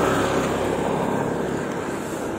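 Road traffic noise from a passing vehicle, a steady rush of engine and tyres that slowly fades.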